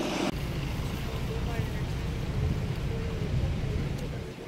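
Wind buffeting the phone's microphone, a steady low rumble that starts abruptly a moment in, with faint voices in the background.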